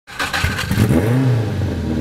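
Car engine revving, its pitch rising and falling back once about a second in.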